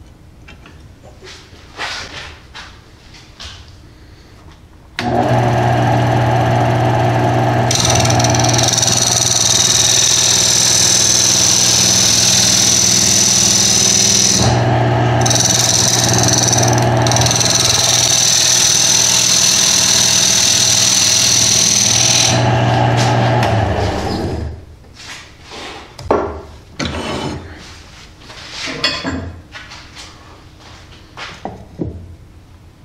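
Wood lathe motor switched on about five seconds in and running steadily with a low hum. A hand-held turning tool cuts the spinning mesquite box with a steady hiss from about eight seconds, lifting off twice briefly, as just a hair more is taken off the lid's lip for a snug fit. Near the end the cutting stops, the lathe winds down, and a few knocks follow as the work is handled.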